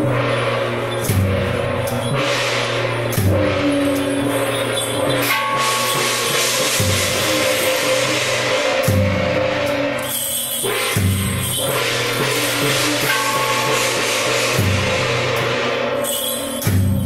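Temple-procession percussion band playing for a Guan Jiang Shou troupe's dance: a deep drum beating every second or two under ringing gongs and clashing cymbals, loud and continuous.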